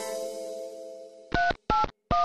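A song's last held chord fades away. Then come short electronic telephone keypad (DTMF) beeps, each two tones at once: two beeps about a third of a second apart, with a third starting at the very end.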